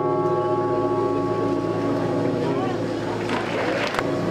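A deep bell tone, part of the show's soundtrack, ringing on and slowly fading, with faint voices beneath.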